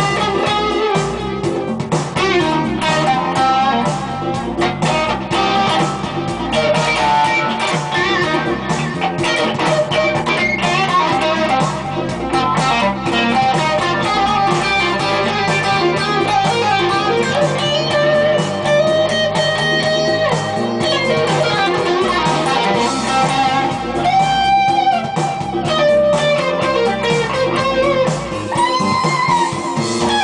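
Electric guitar playing an improvised jazz-blues lead in C minor, overdriven through a Marshall JMP-1 preamp with a Boss CS-3 compressor: a steady stream of single-note phrases, with held, bent notes wavering in vibrato near the end.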